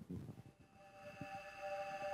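A sustained keyboard chord of several steady tones fades in about half a second in and grows steadily louder, opening a slow worship song. A few faint soft thumps sound underneath.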